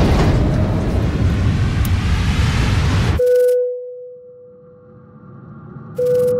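Trailer sound design: a loud rumbling noise swell that cuts off abruptly about three seconds in. It leaves a single steady pure tone that slowly fades, and a second tone strikes at the very end.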